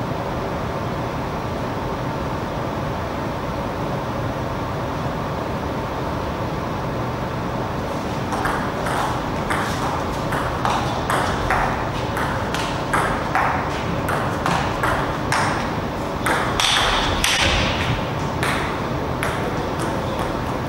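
Table tennis rally: the ball clicks back and forth off the rackets and the table at about two hits a second. The clicks start about eight seconds in and stop shortly before the end. Before the rally there is only a steady hum.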